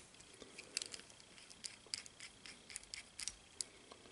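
A small hex driver turning a tiny bolt back into a model helicopter's swash driver arm, with small metal and plastic parts being handled: faint, scattered light clicks and ticks.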